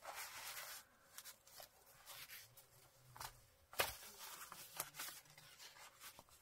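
Faint rustle of paper pages being handled and turned in a handmade journal, with a few light taps, the sharpest nearly four seconds in.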